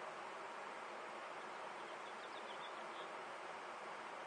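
Steady faint hiss of background noise, with a few faint, short high chirps about two seconds in.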